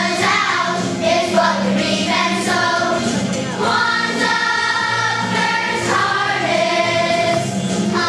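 A children's choir singing in unison, with several long held notes in the middle and steady low notes underneath.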